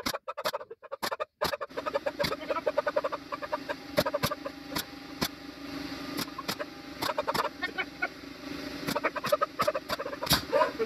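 Pneumatic nail gun firing sharp shots into plywood, several in quick succession at the start and more scattered through. A dog yelps and whines throughout, upset by the sound of the nail gun.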